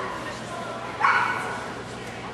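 A dog barks once, about a second in, a single sharp bark that fades over about half a second.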